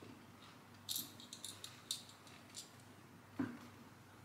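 Small plastic LEGO pieces clicking and rattling against each other as they are handled, in a few short bursts, with one louder knock near the end.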